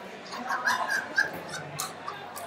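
Wrestling shoes squeaking on the mat in a string of short high chirps as the wrestlers move and shoot in, with a sharp slap near the end and hall chatter behind.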